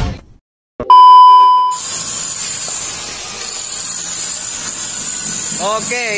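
Music cuts off, and after a moment of dead silence a single loud electronic beep sounds for under a second, about a second in. A steady hiss of background noise follows.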